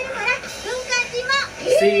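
Speech: high-pitched cartoon voices from a subtitled anime episode, a child's voice among them. A man says "what" near the end.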